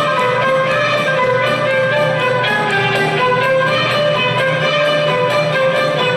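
Arabic orchestra of violins and cellos playing a flowing melody, with a plucked string instrument heard among the bowed strings.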